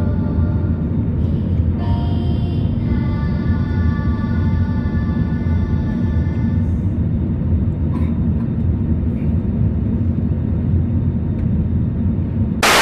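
Steady low rumble of an Airbus A320-200 cabin in the climb after take-off, engine and airflow noise heard from a window seat over the wing. Background music with long held tones plays over it for the first six to seven seconds.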